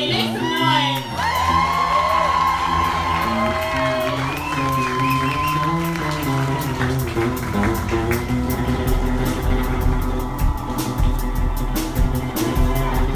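Live band ending a song on a long held note while the audience cheers and whoops, then drums and bass starting a fast rock groove from about two-thirds of the way in.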